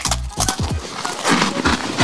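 Thin plastic snack wrapper rustling and crinkling as it is handled and torn open, with a few low knocks of handling, over background music.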